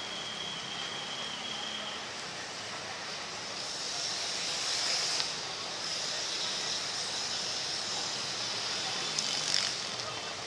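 Electric commuter train pulling away on the curve: a steady rush of running and wheel-on-rail noise, with a brief high steady whine at the start and a hissing that builds through the middle.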